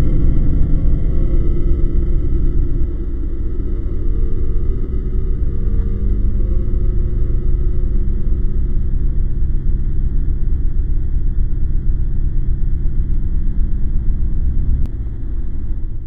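A loud, steady low rumble with a faint hum running through it. It drops a little about fifteen seconds in and fades out at the very end.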